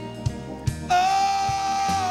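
Live blues band playing, with drums and bass keeping a steady beat; about a second in, a harmonica played into a cupped vocal microphone holds one long, steady high note.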